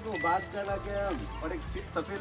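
People's voices over background music.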